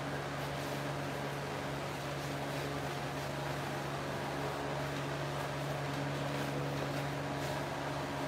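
Steady low hum with an even hiss over it, unchanging throughout: the background noise of the room.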